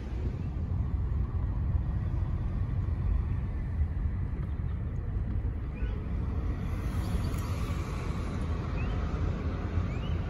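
Steady low rumble of a car's engine and tyres, heard from inside the cabin of the moving car.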